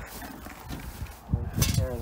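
Faint scraping and light clinks of a screwdriver working along the edge of a pickup's door glass and window frame. A short vocal sound comes near the end.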